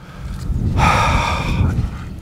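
A man's long exhaled sigh, lasting about a second and a half.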